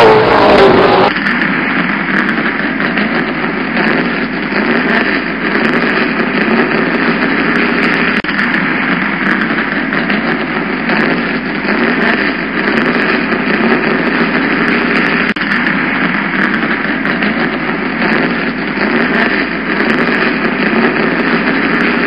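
Land Rover Defender on the move: a steady, unchanging rush of engine and road noise without revving, beginning abruptly about a second in.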